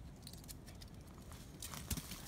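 Faint scattered scrapes and ticks from a dog's claws on tree bark and her paws on dry leaf litter as she clambers down a branch to the ground. The sounds grow a little busier toward the end, with one sharper click just before it.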